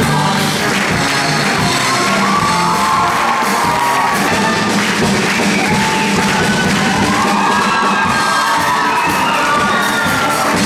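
Live stage-musical number: a band plays a lively tune with voices singing over it during a dance break.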